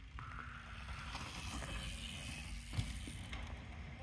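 Mountain bike tyres rolling over loose dirt and wood chips, a hiss that builds, peaks and fades as the bike passes, with one sharp knock a little before the three-second mark.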